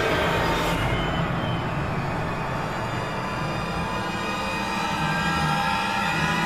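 Suspenseful horror-style background score of sustained, droning held tones over a low rumble.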